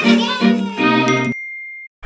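Short musical intro jingle with bright chiming notes, breaking off about two-thirds of the way through into one thin high held tone that fades away.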